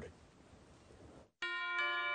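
Near silence, then about one and a half seconds in a TV news music sting for the weather segment starts: a held, chime-like chord of several steady tones, with more notes joining shortly after.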